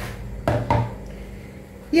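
Two short knocks of kitchenware being handled, about half a second apart, over a low steady hum; a word is spoken at the very end.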